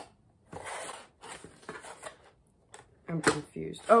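Cardboard and paper rustling and sliding in short bursts as packages are handled inside a cardboard shipping box, followed by a brief murmured voice near the end.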